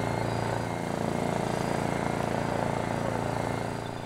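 Electrofishing boat's engine running steadily with an even, droning hum, fading near the end.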